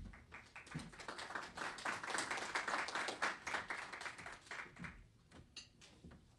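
Audience applauding, building up over the first couple of seconds and dying away after about five seconds.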